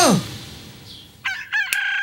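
A shouted cry fades out at the very start, then a rooster crows from a little over a second in, holding one long high note.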